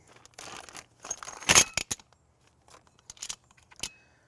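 A plastic bag of small metal mounting hardware rustling open, then the steel parts clattering and clinking against each other and into a metal magnetic parts bowl, loudest about a second and a half in, with a few separate clicks after.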